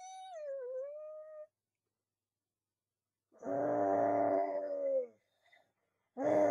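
Two cartoonish animal-like vocal cries voiced for plush toys. First comes a thin squeaky cry of about a second and a half that dips in pitch and rises again. After a pause of nearly two seconds comes a louder, fuller cry that drops in pitch as it ends.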